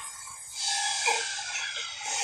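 Sound effects from a tokusatsu TV episode: a steady hiss comes in about half a second in, with faint tones under it.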